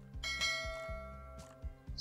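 A single bell-like notification chime rings once and fades out over about a second, over soft background music.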